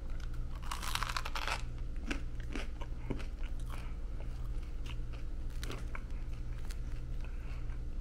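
A person biting into a piece of crusty homemade bread and chewing it close to the microphone: one crunchy bite about a second in, then scattered crunching as she chews.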